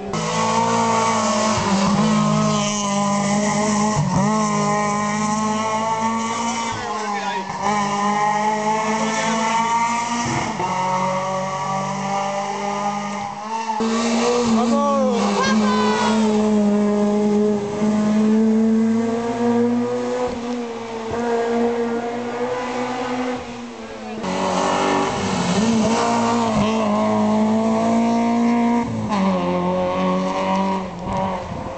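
Rally car engines revving hard along a twisty stage road. Their pitch repeatedly drops and climbs again as the drivers lift off and change gear, with a break about a third of the way in and another about four-fifths of the way in. One of the cars is a Ford Fiesta rally car.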